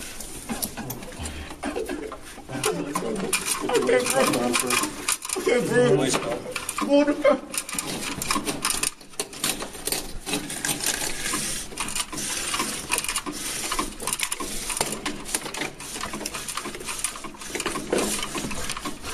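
Rapid clicking and rattling of restraint-chair straps and buckles being pulled tight and fastened by several hands, with muffled voices in the middle.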